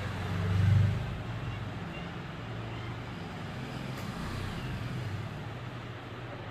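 A low, steady mechanical hum that swells to its loudest just under a second in, then settles back.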